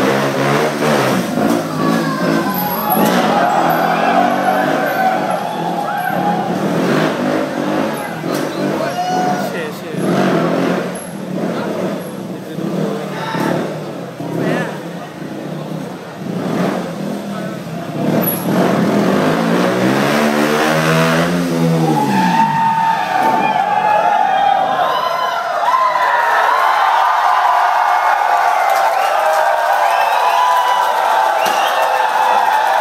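KTM 200 Duke's single-cylinder engine revving during a stunt-riding routine, its pitch rising and falling. About twenty seconds in, the engine note swoops down and climbs back up. After that the crowd shouts and cheers over it.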